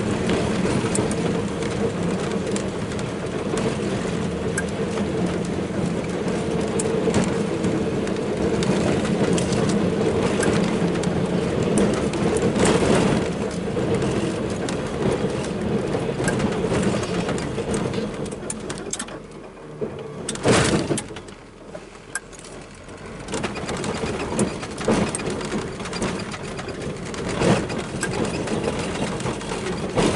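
Pickup truck engine running steadily under load while plowing snow, heard from inside the cab, with scattered knocks and rattles throughout. About twenty seconds in it eases off for a few seconds, with one sharp, loud knock, before picking up again.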